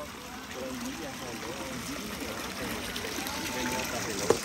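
Water trickling and splashing steadily in a small rock garden fountain, with people talking in the background.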